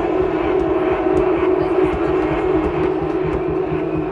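A loud, sustained droning synth tone from the club's sound system, held on one pitch without a beat, over crowd noise.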